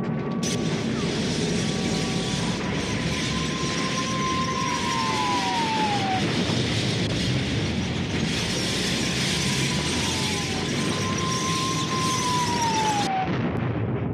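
Wartime sound effects of aircraft flying over: a steady rushing engine noise with two high whines that hold their pitch and then drop as each plane passes, about four seconds in and again about ten seconds in. The rushing cuts off suddenly near the end.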